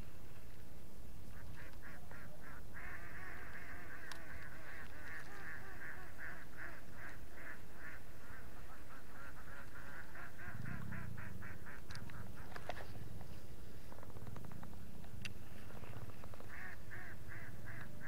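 An animal calling in a long run of short, even, rapidly repeated notes, about four or five a second, starting about a second and a half in and stopping just before the end, with a few sharp clicks among them.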